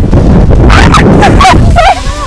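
Strong wind buffeting the microphone with a heavy rumble. Over it come a few short, high-pitched, pitch-bending yelps from a woman's voice, about a second in and again near the end.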